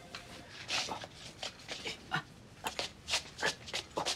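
A young man's series of short strained breaths and small pained grunts and whimpers as he struggles to move on an injured body.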